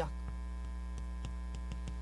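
Steady electrical mains hum on the recording, with faint, irregular ticks of chalk tapping on a blackboard as words are written.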